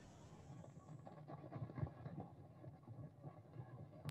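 Faint, irregular crackling static in a video-call audio feed.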